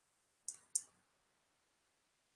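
Two short computer mouse clicks about a quarter second apart, about half a second in, with near silence around them.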